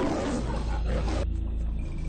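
Cinematic intro sound effect: a loud, noisy whoosh that cuts off sharply just over a second in, over a deep, steady rumbling roar.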